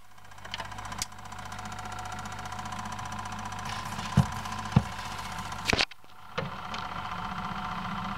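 Automatic record player's changer mechanism running through its cycle: a steady mechanical hum from the motor and gears, with a few sharp clicks about four to six seconds in as the tonearm swings over and sets down on the spinning 45 rpm record.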